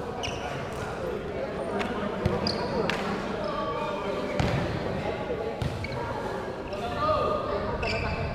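Irregular sharp strikes of a volleyball being played, echoing in a large indoor sports hall, with players' voices calling out.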